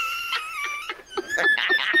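High-pitched, squealing laughter: one long held squeal, then from about a second in a fast run of rhythmic hee-hee-hee bursts.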